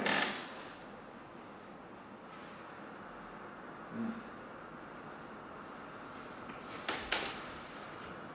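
Quiet room tone, broken by two short, sharp noises close together about seven seconds in.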